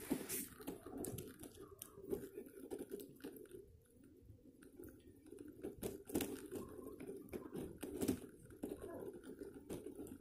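A hoverboard's wheels rolling over cracked asphalt: a faint, steady low rumble broken by scattered clicks and crackles, quietest around four seconds in.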